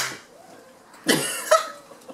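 A sharp click as background music cuts off, then near quiet until, about a second in, a short breathy burst of a boy's laughter runs into a shouted "go".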